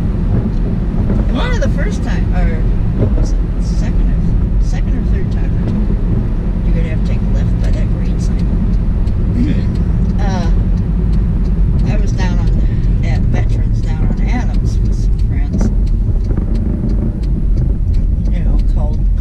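Steady low rumble of a car's engine and tyres heard from inside the cabin while driving, with voices talking over it now and then.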